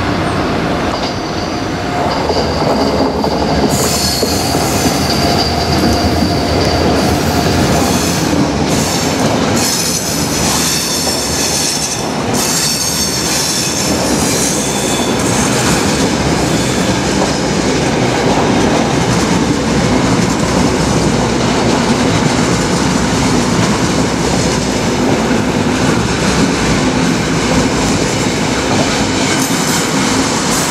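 NSB El 18 electric locomotive and its passenger coaches passing close by, steel wheels running on the rails. High wheel squeal from the curved track sets in about four seconds in and lasts around ten seconds, under a steady rumble of passing coaches.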